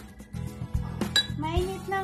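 Metal spoon clinking against a ceramic mug and bowl, two sharp ringing clinks about a second apart, over steady background music.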